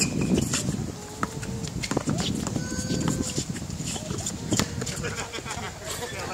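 Basketball bouncing on an outdoor hard court as players dribble, in irregular sharp knocks, with a few short squeaks of sneakers on the court surface.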